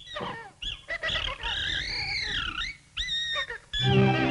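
High-pitched cartoon animal squeals and chatter that slide up and down in pitch: a few short squeaks, then one long rising-and-falling squeal, then short held squeaks near the end.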